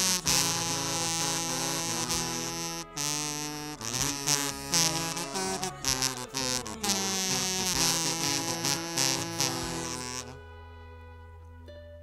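A kazoo buzzes the vocal melody over the song's instrumental backing track. About ten seconds in the full arrangement drops away, leaving quieter held tones.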